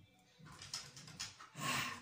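A man's short, noisy intake of breath near the end, after a pause with only faint rustling.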